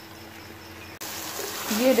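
Faint room tone, then from about a second in a steady sizzle of potatoes and eggplant frying down in oil in a pan (bhuna) with the oil separating out.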